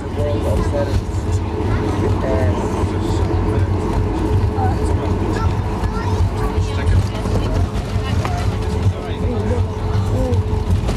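Cabin noise of a Boeing 737-8200 taxiing after landing: a steady low drone from its CFM LEAP-1B engines at idle, with a steady hum tone running through it. Passengers chat in the background.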